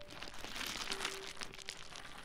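A dense crackling, rustling noise made of many small rapid clicks, steady throughout. It is the sound effect of an animated transition.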